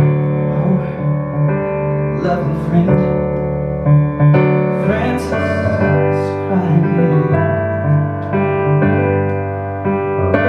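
Piano playing sustained chords as accompaniment to a male voice singing the song's melody in a drawn-out vocal line. The voice comes in phrases, and the piano carries on alone near the end.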